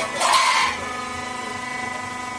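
Roll forming machine's post cutter shearing a formed steel roof panel: a sharp crack right at the start, then a loud harsh burst lasting about half a second, over the steady multi-tone hum of the running machine.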